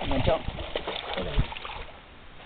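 Indistinct talking over a steady rushing background noise.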